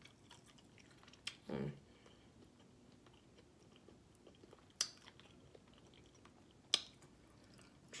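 A person quietly chewing a fried salmon croquette, with a few sharp mouth clicks and a short hummed "mm" about a second and a half in.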